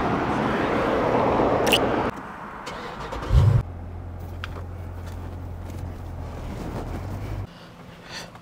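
Road traffic noise for about two seconds. Then, heard from inside the cabin, a car engine starts with a short loud low rumble and settles into a steady low idle.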